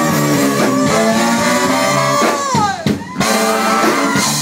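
Live funk band with a horn section of trumpets, trombone and saxophones playing held chords. About two and a half seconds in, the chord ends in a downward slide and the music breaks briefly, then the band comes back in.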